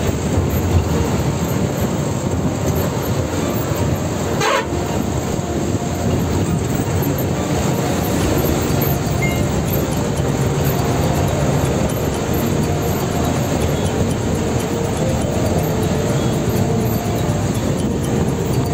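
Ashok Leyland bus's diesel engine and road noise heard in the driver's cab while under way, a steady rumble with rattle. A brief falling whistle comes about four seconds in.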